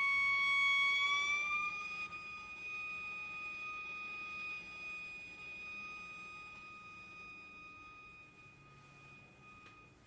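A bowed, water-tuned crystal glass sounds one high, pure sustained tone. It rises slightly in pitch over the first two seconds, then holds and slowly fades, stopping just before the end.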